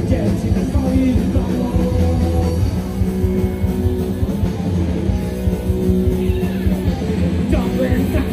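Punk rock band playing live: distorted electric guitars, bass and drums, loud and continuous, heard through the stage PA from within the crowd.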